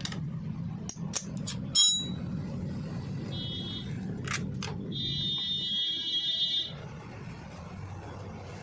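Metal clicks and clinks of a T-handle wrench working the bolts of a Honda scooter's belt cover, the loudest a ringing clink about two seconds in. A steady high-pitched tone sounds briefly a little past three seconds and again for nearly two seconds from about five seconds in, over a low steady hum.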